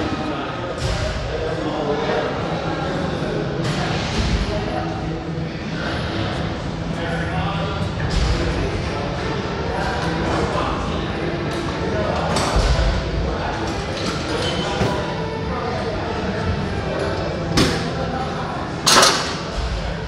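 Gym background of music and voices, with thuds and clanks of weight plates. The loudest clanks come near the end as the plate-loaded seated row machine's handles are let go and its weight is set down.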